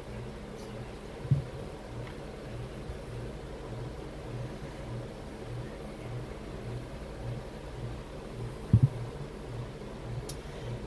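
A steady low mechanical hum that pulses about twice a second, with two short knocks, one about a second in and one near the end.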